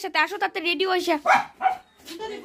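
A young child's high-pitched voice talking, in short broken phrases that trail off near the end.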